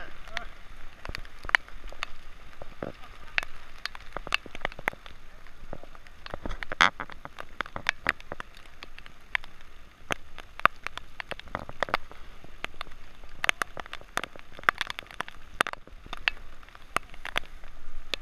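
Steady rain, with frequent irregular sharp taps of raindrops striking the camera close to the microphone.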